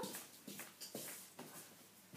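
Faint handling sounds: a few light knocks and rustles as things are set down on a wooden floor and the phone is moved about.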